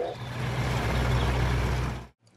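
Diesel engines of road rollers running with a steady low drone.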